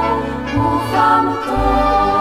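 Choral music: voices holding sustained notes over a bass line that moves to a new note about once a second.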